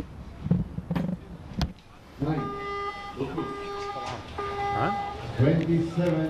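A compound bow shot: a sharp click about a second in, then a sharper snap with a thump about a second and a half in. After it come three held, pitched tones, each under a second long, and a voice near the end.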